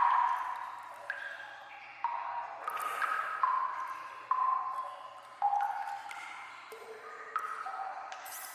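Water drops falling one by one into standing water in an echoing sewer tunnel, about one a second. Each is a pitched plink with a long ringing tail, and the pitch differs from drop to drop. The loudest drop comes right at the start.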